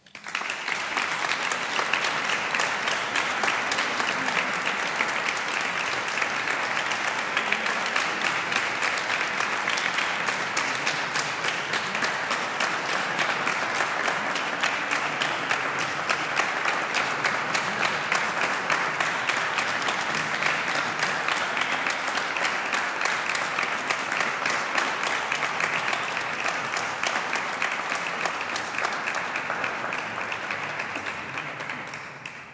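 Audience applauding, starting abruptly and continuing steadily and densely throughout.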